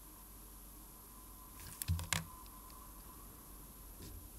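Quiet room tone with a faint steady high hum, broken about halfway through by a quick cluster of small sharp clicks and a soft low bump.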